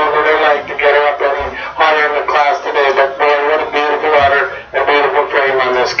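A man talking without a break into a handheld microphone, his voice carried over a public-address system.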